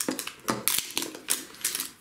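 Crinkly wrapping being peeled off a surprise ball, a quick irregular run of crackles and clicks.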